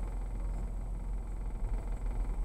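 Low, steady rumble of car cabin noise: engine and road noise from a car moving slowly in city traffic.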